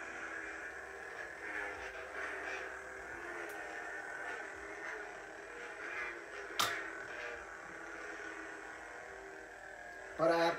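Darth Maul Force FX double-bladed lightsaber replica humming steadily, with swing sounds swelling several times as the staff is moved, and a single sharp crack about six and a half seconds in.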